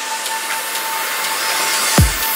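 Deep house build-up: a white-noise riser and a held synth note, with the bass and kick drum cut out, the noise slowly growing louder toward the drop.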